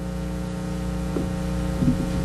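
Steady electrical mains hum with a low drone and several held tones, as from the church sound system between parts of the service.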